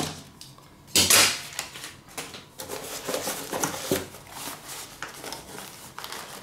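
Metal cookware being handled: aluminium Trangia pots and the metal pot gripper clink and clatter, with a louder clatter about a second in and lighter clicks and knocks after it.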